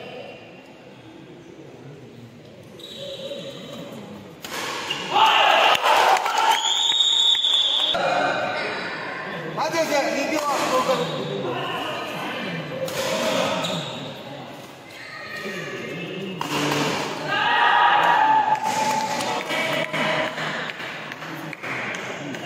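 A badminton doubles rally in an echoing indoor hall: sharp racket hits on the shuttlecock and footfalls on the court, amid shouting voices from the players and spectators.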